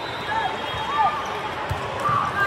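A volleyball bounced on the court floor, two dull thuds about a second in and near the end, over the chatter of a large, echoing sports hall.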